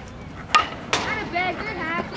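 A pitched baseball landing with a sharp smack about half a second in, then a second sharp knock just after, followed by voices calling out.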